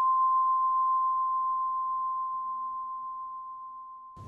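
A single struck bell tone ringing out: one clear, high, steady note that slowly fades, with a slight waver in loudness.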